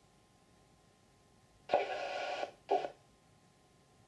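Air traffic control radio feed: faint hiss, broken about halfway by a short burst of transmission with no clear words, then a second, shorter blip.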